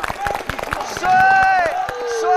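A crowd cheering and screaming as a stage performance ends, with scattered sharp knocks from claps or stamping in the first second and a loud held high-pitched shout about a second in.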